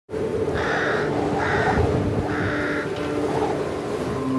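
A crow cawing three times, about a second apart, over a steady low background.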